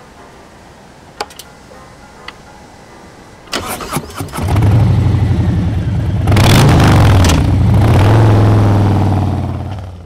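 Harley-Davidson Road King's V-twin engine being started: a couple of faint clicks, then the starter cranks about three and a half seconds in and the engine catches. It is revved briefly, then runs steadily and fades out near the end.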